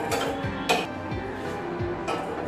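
Background music with a steady beat, over which steel tongs clink against a clay cup and the gas burner as the cup is handled and set down. The sharpest clink comes about two-thirds of a second in.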